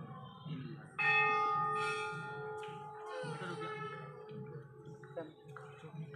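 A temple bell struck once about a second in, its several tones ringing on and slowly fading over the next few seconds.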